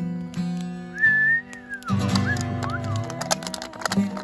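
Acoustic guitar chord ringing out at the close of a song, cut through about a second in by a loud, shrill human whistle that glides down at its end. Short whistles, a renewed strum and a patter of sharp claps follow in the second half.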